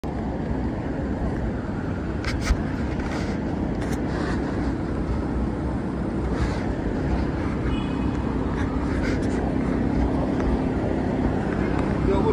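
Busy city street ambience: steady traffic noise with passers-by talking, and one sharp knock about two and a half seconds in.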